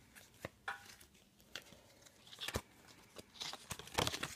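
Oversized playing cards being handled and thumbed through: about half a dozen short, light snaps and flicks of card stock, spread unevenly, as cards are slid apart and laid down.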